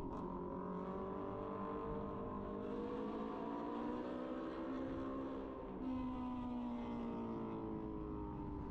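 A vehicle engine under way: its pitch climbs as it pulls, dips briefly about five and a half seconds in, then carries on at a lower pitch, like an upshift. Road noise runs beneath it.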